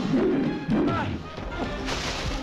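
Action-film soundtrack: music under crashing and whacking fight sound effects, with short shouts in the first second.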